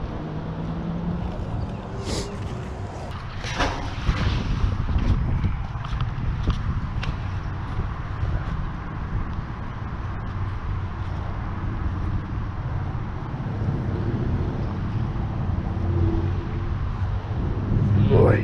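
Steady low rumble of road traffic passing over a concrete bridge overhead, with a few sharp knocks and a splash-like burst a few seconds in as a magnet on a rope is thrown and hauled in.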